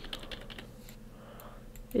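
Faint, quick clicking and tapping of computer input at a desk, a cluster in the first half-second and a few more clicks later.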